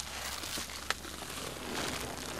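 Plastic mailer bag rustling and crinkling as it is handled, with one sharp click about a second in.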